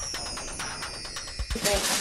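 A short electronic music sting for an on-screen countdown graphic: a high falling sweep over a quick, even ticking beat. A child's voice from home video briefly breaks in near the end.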